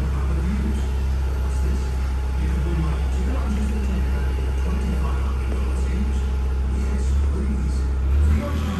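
Engine of an LPG-powered 2.5 tonne Linde forklift running steadily with a deep, even hum while the mast is lowered.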